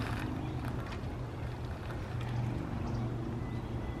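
A steady low hum with a few faint clicks as a cable bike lock is worked loose at an e-bike's rear wheel.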